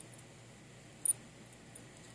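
Quiet room tone, with one brief high-pitched tick about a second in.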